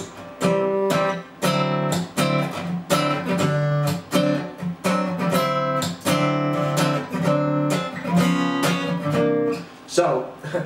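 Steel-string acoustic guitar strummed in a funk rhythm: quick, choppy chord strokes that move between C-chord voicings (open C and C7). The strumming breaks into short drops every second or two.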